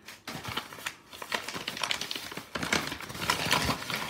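Brown kraft paper wrapping crinkling and rustling in irregular crackles as hands open it around a candle. It is quiet for about the first second, then busier.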